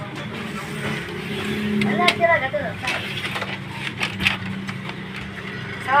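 A low steady mechanical hum with a few sharp clicks, and brief voices in the background about two seconds in.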